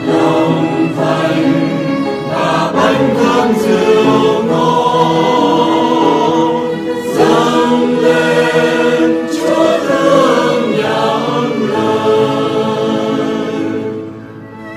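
A choir singing a Vietnamese Catholic offertory hymn about offering bread and wine.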